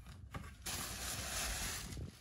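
Packaging rustling and crinkling as a gift box is opened by hand, a few light clicks first, then a dense rustle starting about half a second in and lasting a little over a second.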